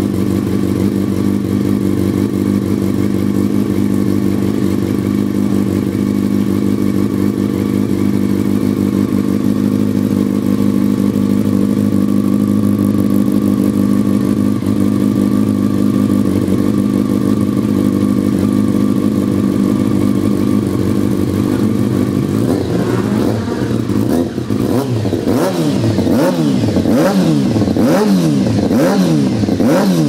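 2005 Yamaha YZF-R6's inline-four engine through a Termignoni slip-on exhaust, idling steadily. About twenty-three seconds in it starts being revved in short throttle blips, each a quick rise and fall in pitch, roughly one a second.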